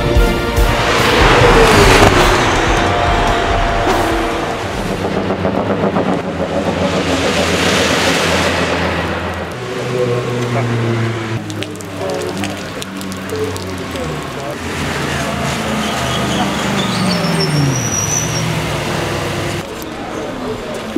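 Race cars passing at speed, each pass swelling and fading, about two seconds in and again around eight seconds in, over background music. The second half is quieter.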